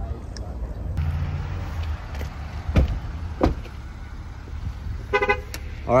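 Low rumble with two knocks as the phone is handled against clothing, then a short, steady horn toot about five seconds in.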